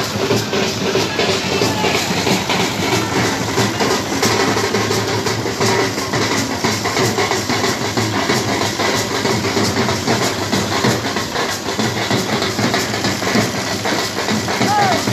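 Several drums, large bass drums and smaller waist-slung side drums, beaten together in a dense, continuous rapid rhythm.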